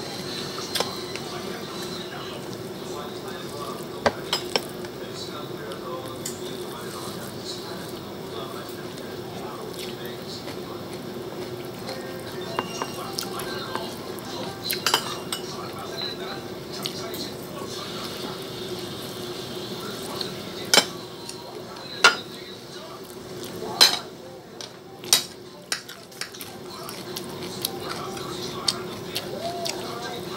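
Eating by hand from a ceramic plate: fingers picking at fried rice and cabbage, with scattered sharp clicks and taps on the plate, several louder ones in a cluster near the end, over a steady low hum.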